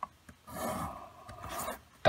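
Pencil drawing a line along the edge of a plastic set square on paper: a scratchy rasp of graphite on paper lasting about a second, after a light tap at the start.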